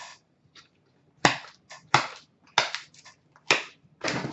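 Cardboard trading-card box packaging being handled: four or five sharp snaps and taps, starting about a second in and coming roughly every half second to second.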